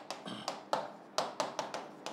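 A pen tapping and clicking against an interactive touchscreen display as words are handwritten on it: a quick, irregular series of sharp taps.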